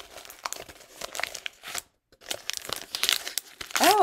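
Gift wrapping paper being torn and crumpled off a small paperback book: irregular crackling rustles and rips, with a brief pause about halfway through.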